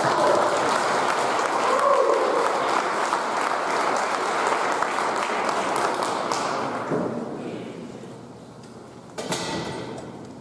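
Audience applause in a school auditorium, dying away about seven to eight seconds in, with a short burst of noise shortly before the end.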